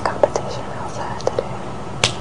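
Soft whispering with a few small mouth clicks, over a steady background hiss and hum.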